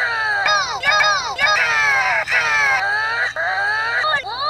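A cartoon character's voice heavily distorted by audio effects. It is pitched up and layered in several shifted copies, so it comes out as short rising-and-falling phrases with no clear words.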